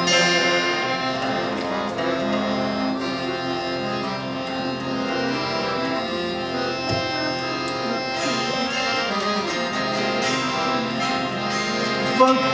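Harmonium playing sustained reed notes in an instrumental passage of a ghazal, with tabla strokes accompanying it, more of them in the second half.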